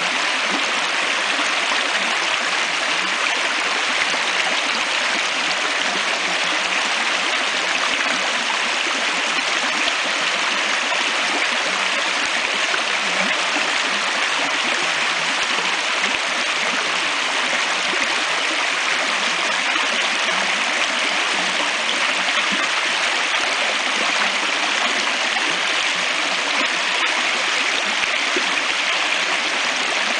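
A shallow stream rushing and burbling over stones, a steady, even water noise throughout.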